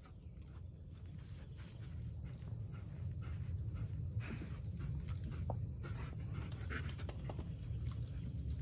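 Straw bedding rustling and crackling under a German Shepherd's paws as she moves about, with short scattered rustles in the second half. Under it runs a steady low rumble, and a constant high-pitched whine.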